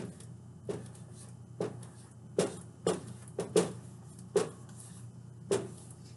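Dry-erase marker writing a word on a whiteboard: about nine short, scratchy strokes at uneven intervals.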